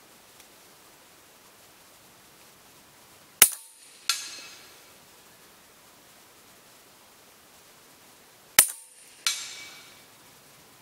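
Two shots from a Huben K1 .22 PCP air rifle firing cast lead slugs at about 285 m/s, a sharp report each, about five seconds apart. Each report is followed about two-thirds of a second later by a second, weaker sound that fades away slowly.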